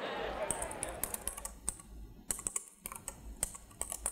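Typing on a computer keyboard: irregular runs of sharp key clicks with brief pauses between them.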